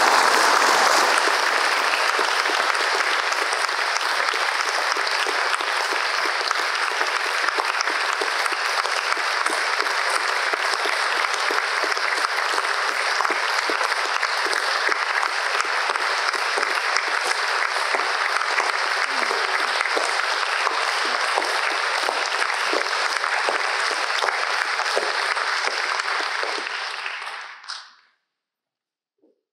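A lecture-hall audience applauding steadily, loudest at the start, then fading out near the end.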